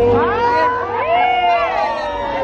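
Mariachi music: one long held note with other notes sliding up and down over it.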